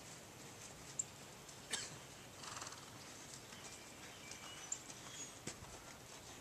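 Faint sound of a saddled horse being led on sand, with a short fluttering snort about two and a half seconds in and a few sharp clicks. Birds chirp faintly.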